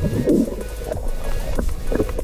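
Underwater bubbling and gurgling as breath is let out through a snorkel and mouth, strongest just after the start, over background music.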